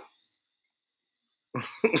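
Dead silence, then about one and a half seconds in a man breaks into a short, breathy laugh.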